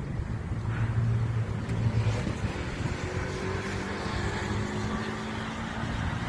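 A motor vehicle's engine running nearby: a steady low hum over a rushing noise, its pitch shifting slightly partway through.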